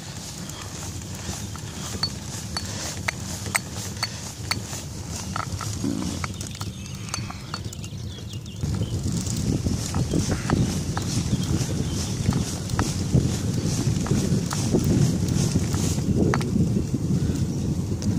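Wind noise on the microphone and tyre rumble from a recumbent trike rolling downhill on a wet road, growing louder about halfway through as it picks up speed, with scattered faint ticks.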